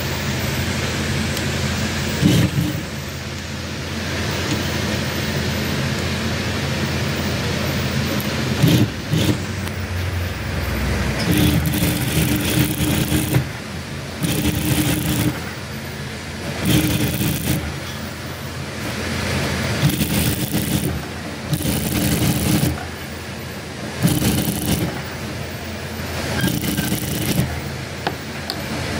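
Industrial single-needle lockstitch sewing machine stitching two fabrics joined through a fabric joint folder, over a steady motor hum. In the second half it runs in repeated one-to-two-second bursts with short pauses between.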